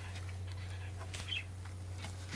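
A pet ferret scrabbling and rustling among cardboard boxes and plastic mailers in its playpen: scattered light clicks and scuffs, with a brief high squeak just past the middle. A steady low hum runs underneath.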